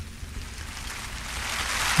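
A hiss-like noise without words that swells steadily louder over about two seconds.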